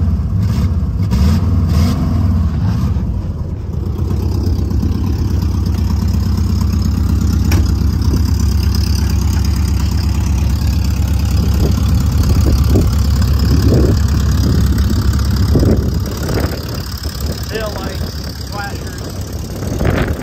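1994 Volkswagen Beetle's air-cooled flat-four engine idling steadily, heard from outside the car. It drops somewhat in level near the end.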